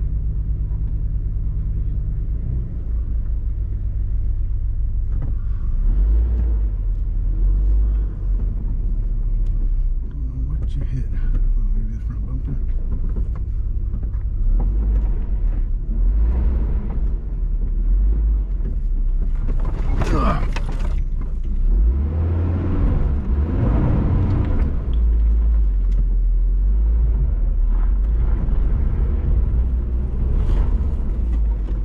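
Off-road vehicle's engine running at low speed as it crawls along a rough dirt trail: a steady low rumble. About twenty seconds in, a brief loud burst of noise cuts through it.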